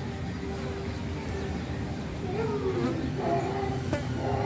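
Faint children's voices with no clear words, the pitch sliding up and down in the second half, over a low steady background hum.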